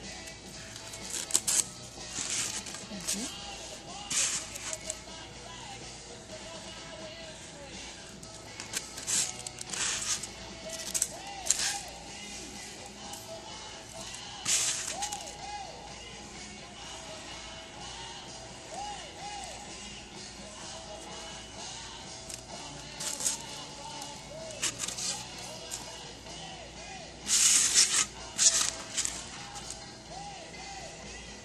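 Faint background music, with a dozen or so short, scratchy hissing bursts as a hot-wire foam cutter is worked through a styrofoam slab; the loudest bursts come near the end.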